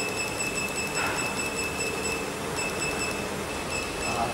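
Laser mould-welding machine firing pulses: a rapid, even train of faint ticks over a steady high-pitched whine, which breaks off briefly a couple of times in the second half.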